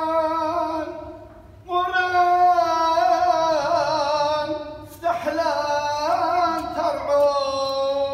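A voice chanting a Syriac Orthodox Passion Week hymn in long held, ornamented phrases, with short breaks for breath about a second in and again near five seconds.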